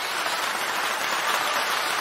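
Steady applause from many hands.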